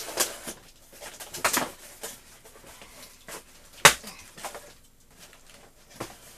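Cardboard box being opened by hand: a series of short scraping and tearing noises from tape and flaps, with one sharp snap about four seconds in, the loudest.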